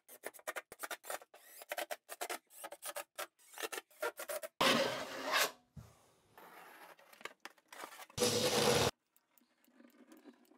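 Scratching and scraping against foam backer board, a dense run of short irregular clicks. Then a power drill spins twice, briefly, driving screws with washers into the board: once about halfway through and again near the end, the second time with a steady motor tone.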